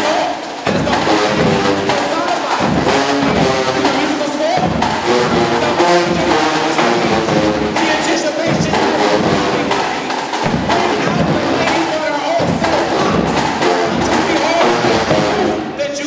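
Marching band playing an up-tempo tune: massed brass, sousaphones and trumpets, over a drumline's driving beat.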